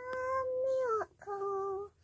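Children singing together with no accompaniment. A long held note falls in pitch at its end about a second in, followed by a shorter, lower held note.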